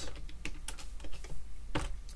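Typing on a computer keyboard: an uneven run of short keystroke clicks as a line of code is edited and finished.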